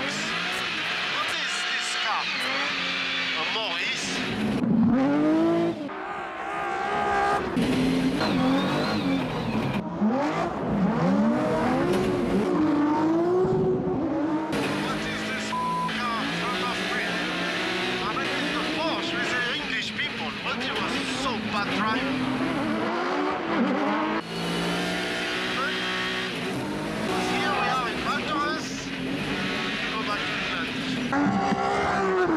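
Race car engine heard from inside the roll-caged cockpit, revving up and falling back over and over as the car is driven hard on snow.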